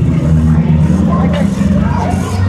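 Several demolition derby cars' engines running together at once, a steady low engine note, with crowd voices over it.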